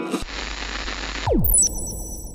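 Record-label logo sting: a wash of static-like noise over a low rumble, then a fast falling pitch sweep a little past the middle, which is the loudest moment, followed by thin high ringing tones.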